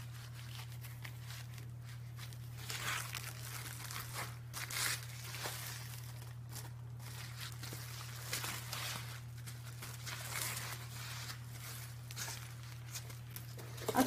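Foam sheet and plastic bubble wrap rustling and crinkling as they are wrapped around a laptop keyboard, in scattered soft bursts over a steady low hum.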